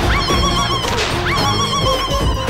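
Background music with a comic sound effect played twice, about a second apart: a quick upward whistle followed by a high, warbling tone.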